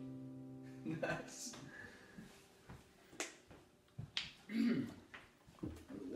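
An acoustic guitar's last chord rings on and dies away within the first second, followed by scattered quiet clicks and knocks of handling.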